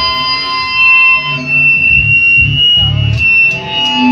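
Electric guitar played loud through an amp, holding steady high ringing tones, with a few short low bass-and-drum hits underneath.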